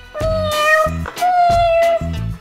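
Two long meows, the second a little higher in pitch, voicing the toy kitty, over background music with a steady beat.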